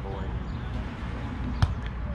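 A volleyball being hit by a player's hands or arms: one sharp slap about one and a half seconds in, with a couple of fainter taps just after.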